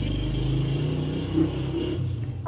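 A motorcycle engine running steadily nearby, a low even engine note with no change in revs.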